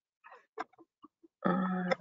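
A person's voice saying "All right" about one and a half seconds in, after a near-quiet pause broken by a few faint short ticks.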